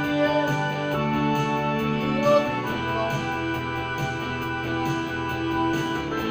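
Electronic arranger keyboard playing a song: held chords that change about a second in and again midway, over a steady programmed beat, with a man's voice singing short phrases along with it.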